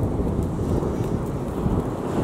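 Wind blowing over the microphone: a steady low rushing noise with no clear strokes or tones.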